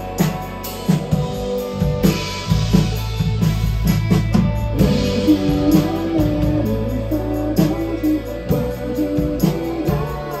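Live band playing a largely instrumental passage of a song: guitar and drum kit over a sustained low bass line, with regular drum hits.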